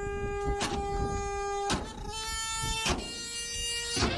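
A truck horn sounding in two long held blasts, with a short break a little before halfway; the second blast is slightly higher in pitch.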